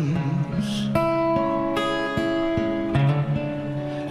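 Acoustic guitar strumming slow chords that ring out, with new chords struck about one second and again just under two seconds in.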